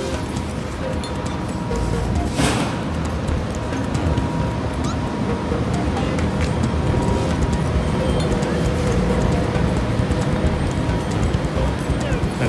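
Background music playing over low street noise, with a brief burst of hiss about two and a half seconds in.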